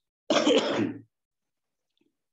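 One sudden, loud explosive burst of breath from a man, under a second long and ending in a short low voiced tail.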